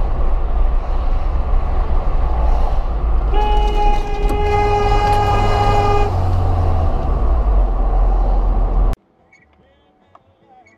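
A vehicle horn sounds one long blast of about three seconds over a loud, steady low rumble. The rumble cuts off abruptly about a second before the end.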